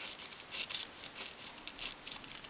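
Pen scratching across a sheet of paper in a few short strokes while writing a number, the longest stroke about half a second in.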